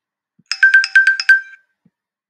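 Short electronic chime jingle: a fast run of about eight bright ringing notes within about a second, ending in a brief ring. It is a slide-transition sound effect.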